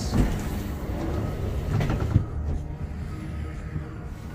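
Steady low rumble and hum of a ski-lift cabin riding down its cable.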